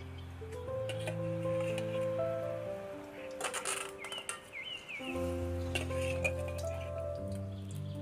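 Background music of slow, held notes over a steady low bass. About three and a half seconds in, the music thins briefly under a short, scraping clatter, likely a ladle setting a boiled egg into a metal wok.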